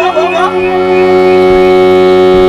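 Steady reedy drone of the Yakshagana ensemble's shruti holding one pitch with a full set of overtones, left bare between sung phrases; the tail of the singer's last phrase fades out in the first half second.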